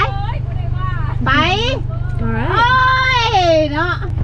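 A person's high-pitched, drawn-out wordless vocal sounds, the longest held for about a second and a half near the end. Under them runs the steady low hum of a car's engine heard inside the cabin.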